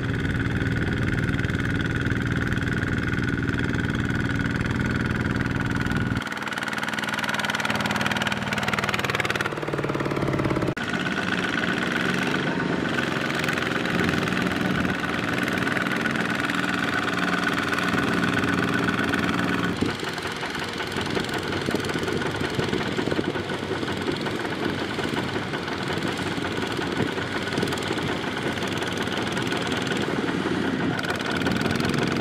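Single-cylinder diesel engine of a two-wheel tractor (power tiller) running under load as it drives through paddy-field mud. Its note changes abruptly a few times, with a falling pitch a little before the middle.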